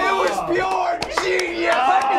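Several people in a small studio laughing and shouting loudly at once, their voices overlapping.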